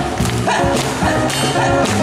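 Live acoustic band playing an upbeat song: upright double bass and acoustic guitar under a man's singing, with a sliding vocal cry about half a second in.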